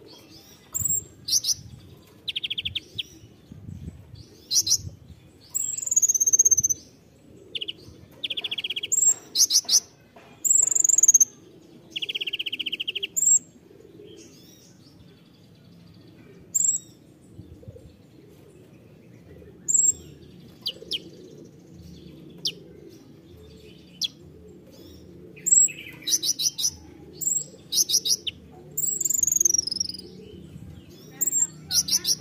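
A male Van Hasselt's sunbird (kolibri ninja) singing in bursts: sharp, very high chips, short fast buzzy trills and quick descending whistles, with the phrases coming thickest near the end. A faint low hum runs underneath.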